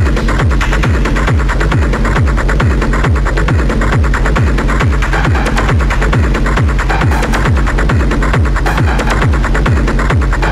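Industrial acid techno track: a fast, steady pulse of deep bass hits, each dropping in pitch, under dense, evenly repeating percussion ticks.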